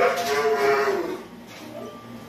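A pit bull-type dog gives one long, drawn-out vocal howl lasting about a second, its pitch sliding slowly down before it stops.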